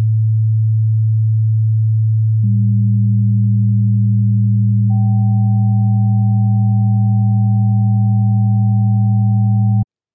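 Pure sine tones: a 110 Hz A2 alone, joined about two and a half seconds in by a 198 Hz G3 (a just minor seventh), then about five seconds in by a 770 Hz tone, the 7th harmonic of A. The 7th harmonic sits a little flat of the G and sounds dissonant against it. All three stop together just before the end.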